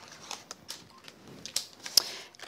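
Scattered light clicks and taps of thin metal cutting dies and card being handled on a craft table, with one sharper click near the end.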